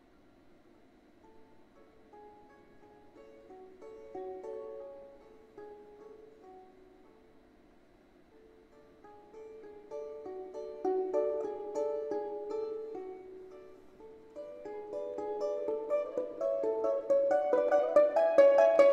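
Balalaika playing a folk-song melody with grand piano accompaniment. It starts very softly, grows louder from about ten seconds in, and is loud near the end.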